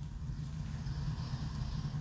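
A long, faint nasal inhale as a glass of dark stout is held to the nose and sniffed, over a steady low background hum.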